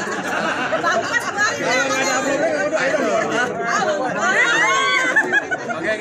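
Several people talking over one another at once: a steady babble of indistinct chatter.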